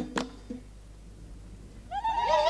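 A last hand clap just after the start ends the clapping and singing, then a short lull. Near the end a high women's ululation (zaghrouta) rises in and holds.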